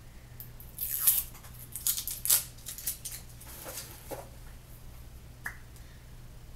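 Plastic wrapper being peeled off a Nudestix lip pencil by hand: crinkling rustles in a few bursts, loudest in the first half, then a short click near the end.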